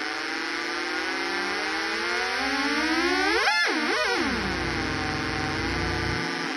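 Homemade transistor-oscillator drone synth, with one row of three oscillators running, making a thick drone of several close tones. The pitch glides up as the master tune knob is turned, shoots up sharply twice around the middle, then falls back and holds steady.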